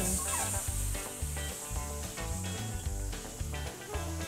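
Air hissing steadily out of the neck of a rubber balloon as it deflates, over background music with a repeating bass line.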